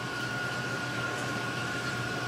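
Steady hum and hiss of running aquarium equipment, with a faint high steady tone over it.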